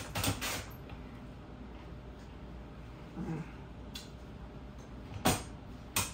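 Onion being slid along a mandoline slicer: a few quick slicing strokes at the start, then mostly quiet handling with a light click and a sharp clack of the slicer about five seconds in, and another at the end.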